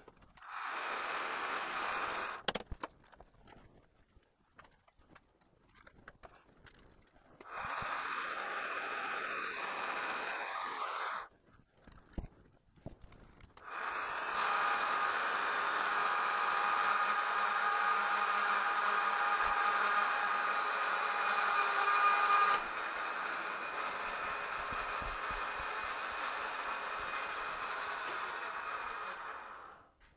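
Metal lathe running in three separate runs with a steady motor and gear whine, stopping and starting twice. The runs are the spindle turning while a hard steel workpiece is drilled and faced. In the last and longest run the cut keeps binding at the centre because the cutting tool is not seated on centre.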